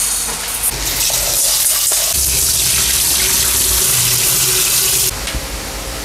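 Dry red rice poured into a stainless steel rice cooker pot, then tap water running into the pot in a steady rush that stops suddenly about five seconds in.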